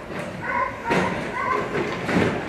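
Shelter dogs barking in the background: short barks every half second to a second, with a sharp knock about a second in.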